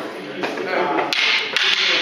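Wooden sparring sticks tapping together a few times in sharp knocks, followed by a brief hissing noise near the end, in a reverberant hall.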